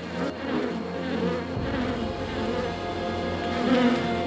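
Swarm of angry yellow jackets buzzing, layered over a dramatic music score. A low rumble comes in about one and a half seconds in.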